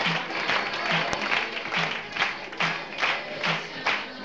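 Audience clapping in a steady rhythm, about two claps a second, over music with a low beat roughly once a second.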